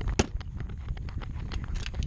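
Motorcycle seat being pressed back down onto the bike and latching: one sharp click just after the start, then a few lighter clicks and knocks, over a low rumble on the microphone.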